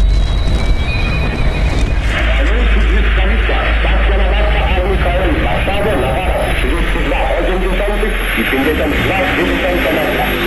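Dark ambient music with a steady low drone. About two seconds in, a hissy, muffled voice in the manner of an old radio broadcast comes in over it, cut off above the middle frequencies.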